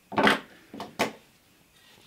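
Small hand-tool handling sounds: a short rustle near the start, then two light clicks about a second in, as jewellery pliers are taken up over copper wire.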